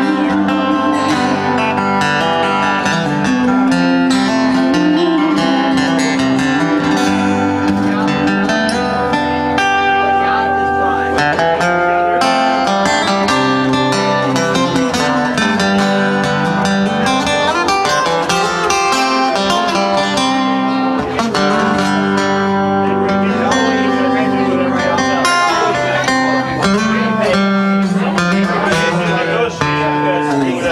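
Acoustic guitars strummed and picked, playing a slow song live, with a woman singing over them at times.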